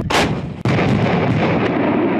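Bofors FH-77B 155 mm towed howitzers firing. One blast comes just after the start and a second about half a second later, followed by a long low rumble.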